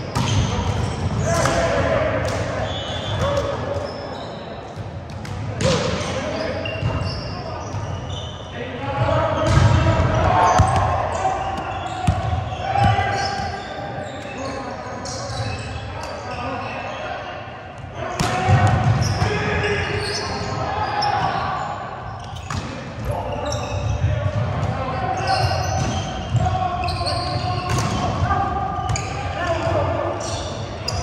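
Volleyball game on a hardwood gym court: repeated hits and thumps of the ball, short high sneaker squeaks on the floor, and players' voices, all echoing in the large hall.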